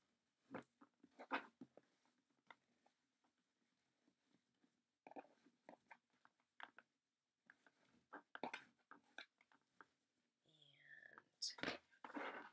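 Faint rustling and crinkling of burlap ribbon as it is pulled and bunched through a wire wreath frame, heard as scattered spells of small crackles with quiet gaps between them.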